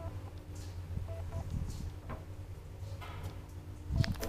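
A 1963 Kone traction elevator car travelling in its shaft: a steady low hum with faint ticks and rattles, and a sharp thump near the end.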